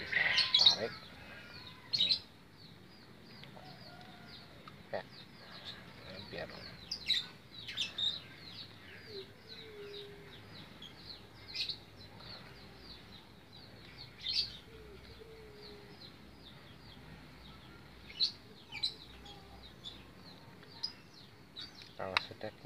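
Small birds chirping steadily in the background: short, high, falling chirps several times a second, with a few louder calls now and then.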